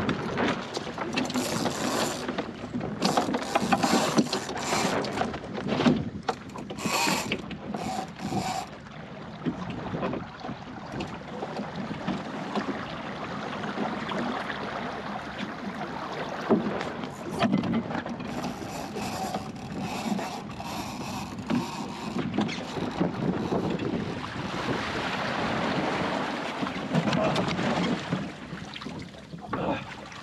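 Water washing against the hull of a small plywood sailing skiff under way, with wind on the microphone. The wash and wind grow stronger over the first several seconds and again a little past the middle.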